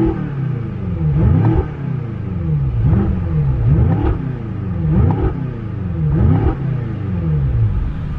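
BMW M5's twin-turbo V8 free-revving in neutral while the car is parked, blipped about seven times in a row, each rev rising quickly and falling back, heard from inside the cabin through its titanium M exhaust.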